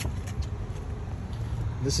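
Steady low outdoor rumble, with a man's voice starting a word near the end.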